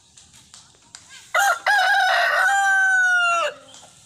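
A junglefowl cock crows once, about a second and a half in. The crow has a short broken opening and then a long held final note that sags slightly in pitch before it cuts off.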